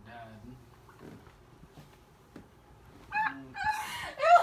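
A person's voice making short, high-pitched whining or squealing sounds, starting about three seconds in after a quiet stretch.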